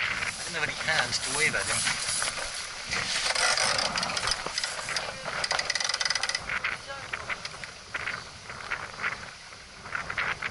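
Wind buffeting an action camera's microphone, with water rushing along a small wooden sailing yacht's hull as the boat tacks in a strong breeze. The noise is choppier and louder for a few seconds in the middle, then eases.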